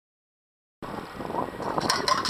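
Silence, then about a second in, water sloshing and draining through a stainless steel beach sand scoop as it is lifted out of shallow water, with a few sharp metal clicks near the end.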